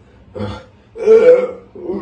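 A man burping after drinking cola: a short burp, then a longer, louder one about a second in.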